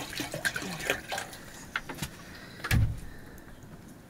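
Water poured from a metal jerrycan into a metal cooking pot, splashing and gurgling during the first second or so. A single heavy thump about three seconds in is the loudest sound.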